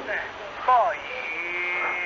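Short pause in a mobile phone call picked up by radio scanner: steady channel hiss, a brief voice fragment just under a second in, then a steady held tone through the last second.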